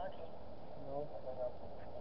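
A short, indistinct vocal sound, a person's voice about a second in, over a steady low background hum.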